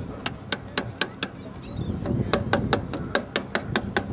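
Rapid, evenly spaced taps on a hard surface: a run of five at about four a second near the start, then after a pause a quicker run of about nine, with faint voices underneath.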